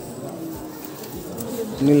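A man's voice, with a low, even background murmur between his words; he speaks again near the end.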